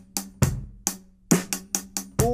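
Drum kit played with sticks: bass drum and snare strokes in a rhythm that steps through quarter notes, triplets, eighths and sixteenths. The strokes come close together in the second half, about five a second.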